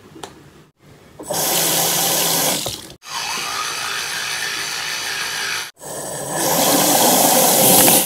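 Bathroom tap running into a sink, in two loud stretches that are cut off suddenly, with an electric toothbrush buzzing steadily between them during brushing.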